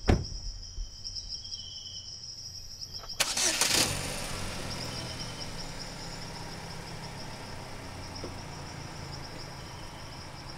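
A thump at the start, then about three seconds in a car engine starts with a short loud burst and settles into a steady low idle. Insects chirp steadily in the background.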